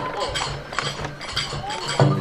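Rapid wooden clacking of a gongen, the sacred lion head of kagura, snapping its jaws in quick clicks. It is the head-biting of a gongen-mai blessing, while the accompanying music pauses. A short rising tone comes near the end.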